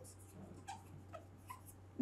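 Faint squeaks and light ticks of a marker writing on a whiteboard, over a low steady hum.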